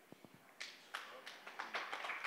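Scattered hand claps from an audience, starting about half a second in and growing denser into applause.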